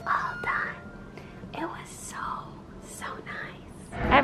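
A woman whispering quietly in short phrases, breathy and toneless, with sharp hissing 's' sounds.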